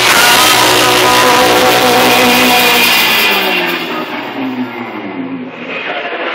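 Live band music from two acoustic guitars and a drum kit, full and loud with cymbals at first; about halfway through the cymbals die away and sustained guitar notes ring on more softly.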